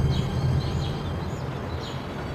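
Quiet outdoor ambience: a low steady hum with a few faint, short bird chirps scattered through it.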